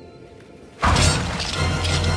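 A sudden loud smashing crash of breaking debris about a second in, over a low droning horror-film score.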